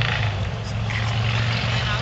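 A motor running with a steady low hum under a constant hiss, with faint voices in the background.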